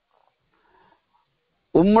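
A man's spoken discourse in Tamil pauses for about a second and a half of near silence, with only a faint brief sound in the middle, then his speech resumes near the end.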